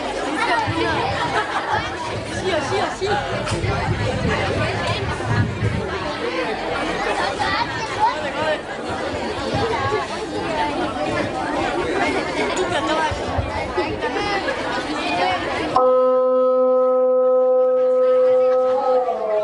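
Many voices chattering at once, a crowd murmur with no single clear speaker. About sixteen seconds in the chatter cuts off suddenly and a louder steady pitched tone, one held note, takes its place.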